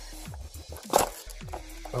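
A single brief handling noise from the GoPro box being turned in the hands, about halfway through, over faint background music.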